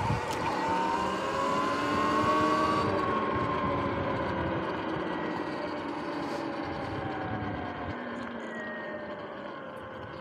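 Sur-Ron X electric dirt bike's drivetrain whining, rising in pitch for the first couple of seconds as it speeds up, then slowly falling and getting quieter, over a steady rush of tyre and wind noise.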